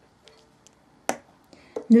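A few faint ticks and one sharp click about a second in, from a wooden violin peg being handled while peg compound is rubbed onto it.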